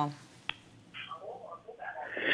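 A single sharp click about half a second in, then faint muffled sounds over an open telephone line.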